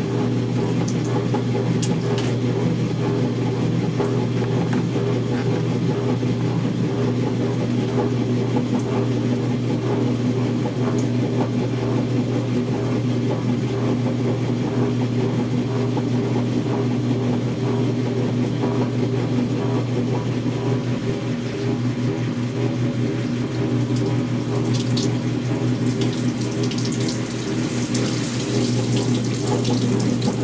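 Montgomery Ward wringer washer running: a steady electric-motor hum under the splash of water wrung from the clothes by the wringer rolls and pouring back into the tub. The splashing gets brighter a few seconds before the end.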